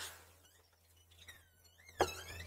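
Near silence: room tone with a low steady hum, and a few faint high gliding tones near the end.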